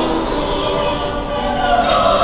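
Choir singing, several voices holding long notes together and moving between them.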